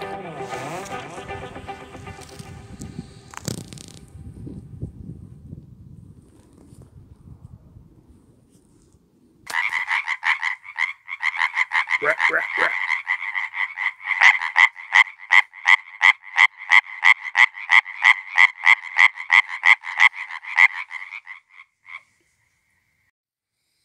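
Background music fades out over the first few seconds. Then a male tree frog calls loudly in a fast, even series of rasping pulses, about four or five a second.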